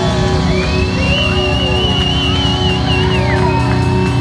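Rock band playing live and loud: electric guitar, bass guitar and drums. Through the middle a single high note is held with a wavering vibrato, then drops away near the end.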